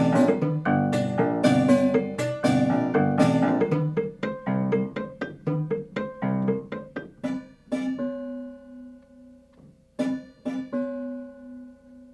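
Prepared grand piano played loudly in dense struck chords, then a run of quick repeated notes that thins out. From about eight seconds in a single held note rings and slowly dies away, with a few soft notes over it, ending quiet.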